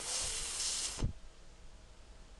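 A person producing a voiceless 'th' sound (/θ/), held for about a second: a soft hiss of air forced between the tongue tip and the teeth, with no voice. It ends in a short low thump.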